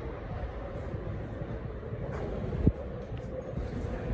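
Outdoor ambience: a steady low rumble, with one sharp knock about two-thirds of the way through.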